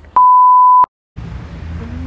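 A single loud, steady, pure beep lasting under a second, an edited-in censor bleep that replaces all other sound. It cuts off into a brief moment of dead silence before street background noise returns.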